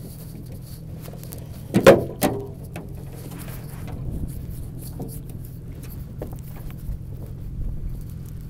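A small homemade metal grapnel anchor being hauled aboard a metal boat. It knocks twice against the gunwale with a short ringing clang about two seconds in, then gives a few lighter clinks, over a steady low hum.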